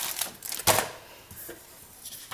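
Motherboard accessories (a driver disc in its card sleeve, cables and a paper manual) being handled and set into a cardboard box: a few short knocks and rustles, the loudest about two-thirds of a second in.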